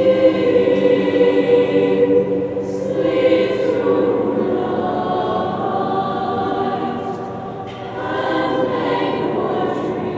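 Mixed high-school choir of boys' and girls' voices singing sustained chords. The sound eases off about seven and a half seconds in, then swells again.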